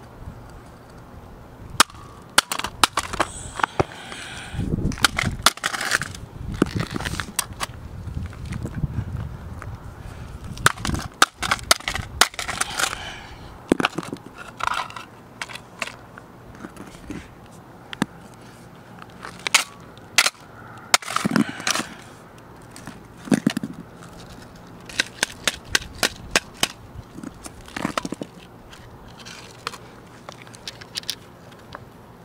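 Sharp cracks and crunches in scattered clusters as a Casio fx-7700GE graphing calculator's already shattered screen and plastic case are broken up further.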